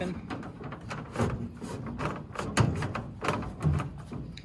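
Nylon cord being cinched tight with a marlin spike hitch, the ladder shifting and knocking against the metal truck bed: a run of irregular knocks and rubbing, the loudest about two and a half seconds in.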